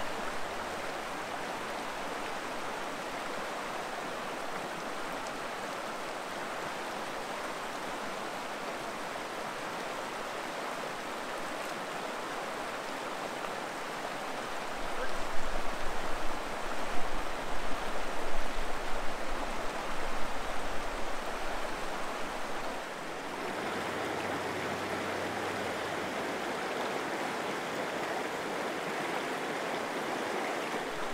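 Fast-flowing mountain river rushing over rocks and riffles, a steady wash of water noise. For several seconds in the middle a louder, uneven low rumbling rides over it.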